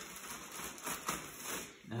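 Faint rustling of a plastic bag liner being pulled tight and hooked over the outside of a cardboard box of drywall mud, in a few short bursts.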